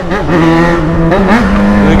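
Yamaha XJ6 motorcycle's inline-four engine running steadily at cruising revs, its pitch climbing a little about one and a half seconds in, with wind rush on the microphone.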